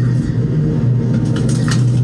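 Supermarket background sound: a steady low hum with faint clatter.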